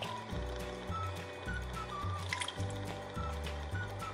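Background music with a bass line and a light melody of single notes, over water being poured from a glass measuring cup onto brown sugar in a skillet.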